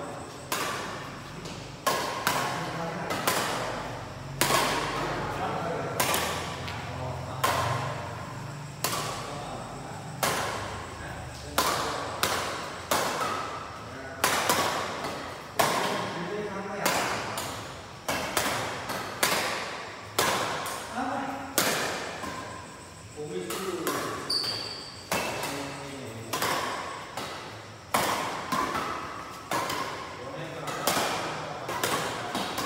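Badminton rackets striking the shuttlecock in a fast doubles rally: sharp cracks roughly once a second, each echoing briefly in a large hall.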